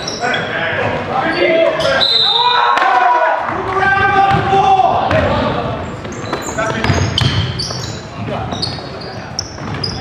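Live basketball game sound in an echoing gym: a ball bouncing on the hardwood, sneakers squeaking, and players shouting words that cannot be made out.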